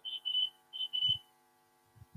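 A high-pitched tone in about four short pulses over the first second, from a phone on speakerphone held up to a microphone, typical of feedback squeal or beeps through the call line.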